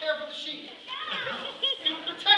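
Young children's high-pitched voices talking and calling out, with no clear words.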